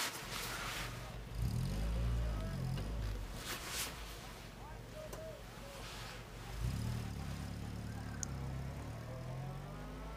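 Soft rustling and handling of clothes and bags during a rummage, with small knocks, over a low rumble that comes in twice and lasts a few seconds each time.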